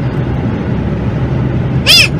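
Steady road and engine noise inside the cabin of a car moving at highway speed. Near the end a person lets out one short, high-pitched vocal squeal.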